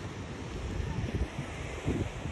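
Wind buffeting the microphone in low, gusty rumbles over a steady rushing hiss.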